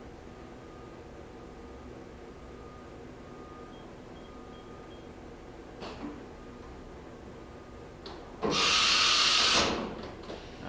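Matsuura 510V vertical machining center running with a steady hum. A click comes about six seconds in, then a loud hiss of air lasting about a second near the end, as the spindle releases its tool in a simulated tool change.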